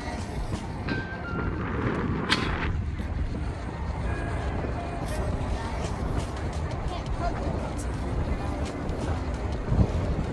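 Wind buffeting the microphone of a camera on a moving bicycle, with a steady low rumble from the ride, and one sharp click a little over two seconds in.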